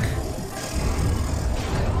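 Soundtrack of a TV superhero episode: a deep, steady rumble with music underneath, the sound effect for a burst of glowing cosmic energy.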